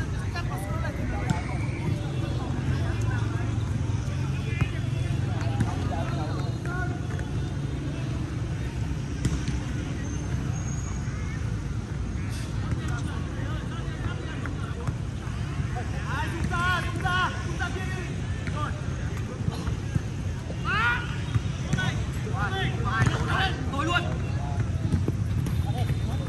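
Footballers' voices calling out across the pitch over a steady low background rumble. The shouts are faint at first and become clearer and more frequent in the second half.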